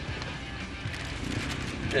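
Steady low rumble of a car's cabin on the move, road and engine noise heard from inside.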